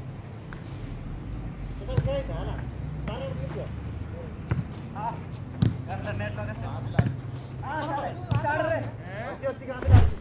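A volleyball being struck by players' hands and forearms in a rally: about six sharp slaps, roughly a second or so apart. Players' voices call between the hits.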